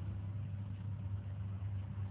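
Faint steady low hum with a light hiss underneath, between two pieces of music.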